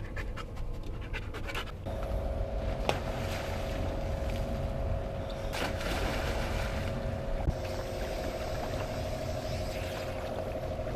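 A dog panting quickly for about two seconds. Then an outboard motor on an inflatable boat runs steadily with water splashing, with a sharp click about three seconds in.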